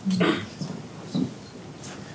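Two short, soft voice sounds from a person, one near the start and a fainter one a little past a second in, with quieter room sound between them.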